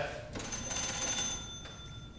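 Antique hand-cranked magneto telephone bell ringing in a rapid trill for about a second as the crank is turned to signal the switchboard operator, then dying away.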